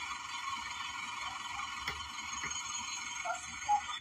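Steady background hiss with a faint constant hum, broken by a couple of faint clicks about two seconds in.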